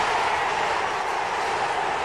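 A steady, even roar of noise with no breaks.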